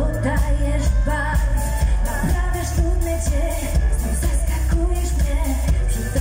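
Live pop dance remix played loud over a concert sound system: a steady, bass-heavy beat with a woman singing the melody into a microphone.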